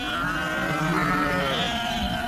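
A wavering, pitched cry that starts suddenly and bends up and down in pitch over about two seconds, part of a cartoon soundtrack.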